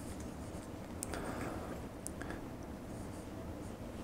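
Faint handling sounds of fingers working a knotted monofilament leader, with a few light ticks and rustles over a low room hum.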